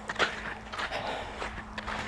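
Quiet footsteps of a person walking across soft, freshly harrowed arena dirt, a few scattered steps.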